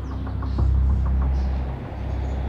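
A low, steady rumble that swells about half a second in and eases off near the end.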